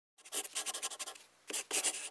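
Pencil scratching on paper in quick, rapid strokes, like handwriting, starting a moment in, pausing briefly just past the middle and then resuming.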